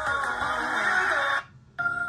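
Music played from a phone through a TDA2030 amplifier module into a coaxial speaker. The song cuts off about one and a half seconds in and, after a brief gap, a different, calmer track begins with held notes.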